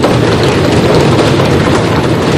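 Members of parliament applauding by drumming on their desks: a loud, dense, continuous rattle of many knocks.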